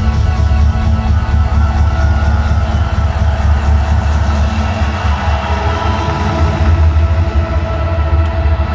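Loud live electronic dance music over an arena sound system, with a heavy steady bass and held synth chords.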